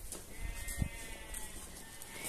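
A sheep bleating: one drawn-out call that rises and falls, with a few soft knocks of footsteps on concrete steps.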